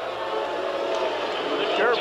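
Stadium crowd murmur, a steady wash of many voices, with no single event standing out.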